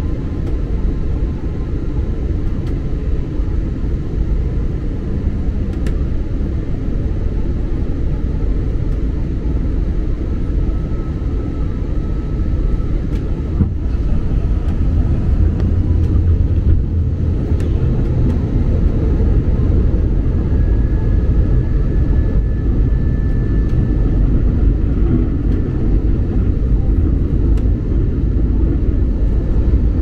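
Airliner cabin noise heard from a window seat on approach: a steady low rumble of jet engines and rushing air, growing a little louder about halfway through.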